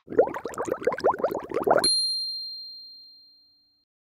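Outro sound effect for a channel end card: a rapid run of short upward-swooping blips for about two seconds, then a single bright ding that rings on and fades away.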